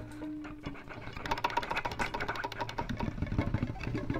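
Violin played through live electronic effects: a held note at the start, then from about a second in a fast, rattling stream of short pulses, like a mechanical stutter.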